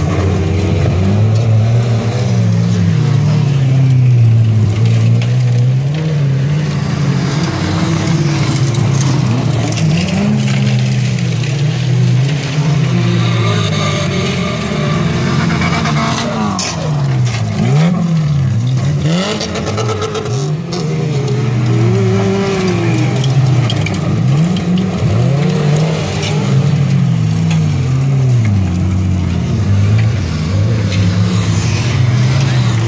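Several small-hatchback stock-car engines racing together on a dirt track, each revving up and down through the gears, their overlapping pitches rising and falling. In the middle, pitches sweep down and back up as cars pass close by.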